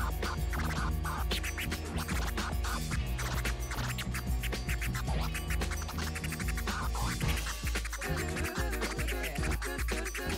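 DJ-mixed dance music with a steady bass beat, with record-scratch sounds cut in over it, most noticeably near the end.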